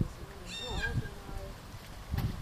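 A person's voice calling out once, high and drawn out, about half a second in. It is the recall command that sends the lying dog running in.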